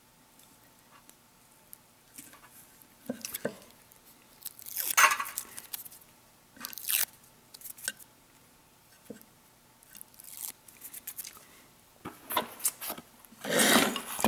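Fingers handling a small DC gear motor and working at the double-sided tape strips on its base. Short, irregular scrapes and crackles are heard, the loudest about five seconds in.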